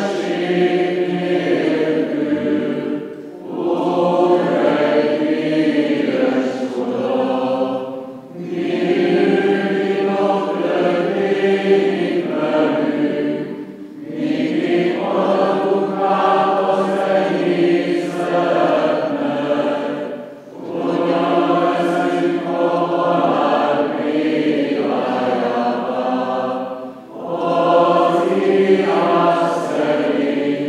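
Byzantine-rite Greek Catholic funeral chant sung a cappella by a group of voices. It comes in sustained phrases of several seconds each, with short breaks between them.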